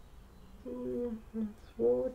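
A woman humming with closed lips, a few held notes starting about half a second in, followed near the end by a louder voiced sound that leads into speech.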